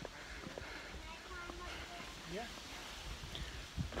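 Faint voices at a distance, in short snatches, including one rising call about two and a half seconds in, over the low rumble of a strap-mounted camera moving with a walking hiker.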